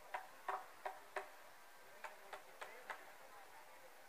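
Faint, irregular sharp taps, about eight in all: four close together in the first second or so, then four more a little spread out in the middle.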